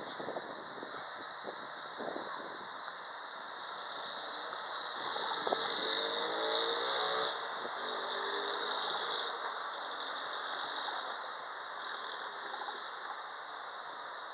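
Street ambience at night with a vehicle passing below, its engine rising in pitch, and a high shrill squeal that swells and fades in several stretches of one to three seconds.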